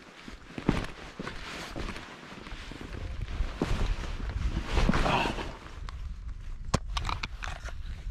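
Footsteps scuffing and clattering over loose boulders, with scattered sharp clicks and knocks of boots and hands on stone.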